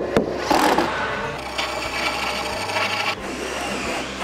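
A single knock at the start, then a hand tool cutting wood, running steadily for about two and a half seconds before easing off.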